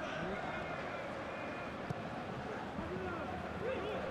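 Live pitch-side sound from a football match in an empty stadium: a steady low background with faint, distant shouts from players on the pitch.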